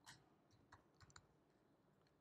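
Faint computer keyboard keystrokes: about five scattered taps, three of them close together around the middle.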